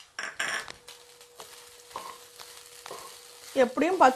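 Spatula stirring cooked white rice into fried vegetables in a frying pan: scraping and tapping against the pan, loudest about half a second in, then softer scrapes.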